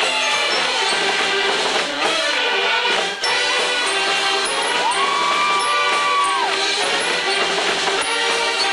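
Mummers string band playing a lively tune on banjos and saxophones. About five seconds in, one held note slides up, holds and slides back down over the band.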